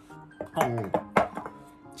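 One sharp clink of tableware on a plate, a little over a second in, heard over steady background music and a brief bit of voice.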